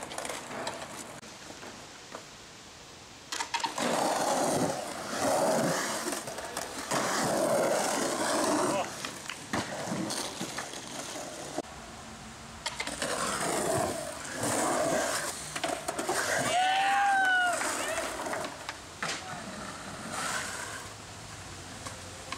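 Skateboard wheels rolling over rough concrete, with people's voices mixed in. A short pitched call about three-quarters of the way through.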